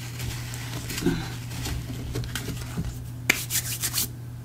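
Hands rubbing and shifting fabric and paper on a craft cutting mat, with a sharp knock and a few clicks about three seconds in, over a steady low hum.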